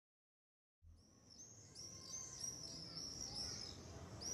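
Silence, then about a second in, birds chirping fade in and grow louder: many short, high, overlapping chirps over a soft background hiss.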